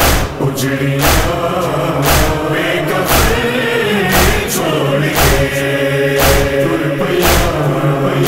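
A nauha, a Shia lament, sung by a chorus over a steady low drone, with a strong beat about once a second.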